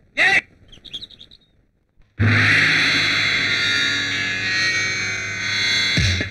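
Film song break: a quick falling swoop sound effect, a few faint chirps, then a short silence. About two seconds in, a loud sustained distorted electric guitar chord rings out and is held until the beat returns.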